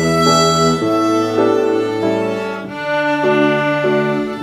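Two violins playing a waltz tune together in a duet, bowed notes changing about every half second, with a low held note sounding beneath them.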